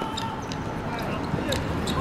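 A football knocking on a hard court: a handful of short, light knocks, irregularly spaced, as the ball is bounced or tapped for the kick-off.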